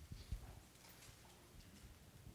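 Near silence, broken by a few faint low knocks in the first half second and light shuffling: people moving about on a carpeted floor and handling offering plates.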